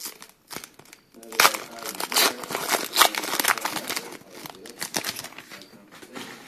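Foil wrapper of a trading-card pack crinkling as it is handled and opened, in dense, irregular crackles that start about a second in.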